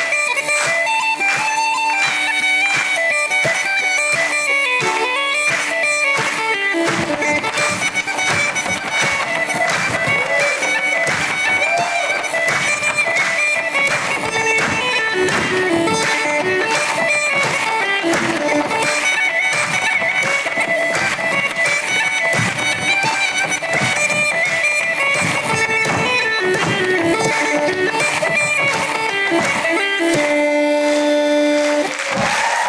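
Uilleann pipes playing a fast Irish tune over a steady drone; about seven seconds in the drone drops out and the melody carries on over a rhythmic strummed guitar accompaniment.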